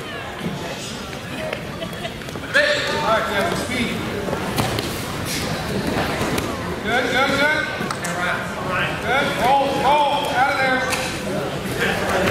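Indistinct voices of spectators and coaches calling out during a judo bout, echoing in a gymnasium. Louder bursts of calling come about two and a half seconds in and again in the second half.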